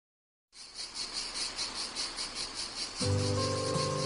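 After silence, high insect chirping starts about half a second in and pulses rapidly and evenly, opening the song recording. About three seconds in, the music enters with bass and held chords under the chirping.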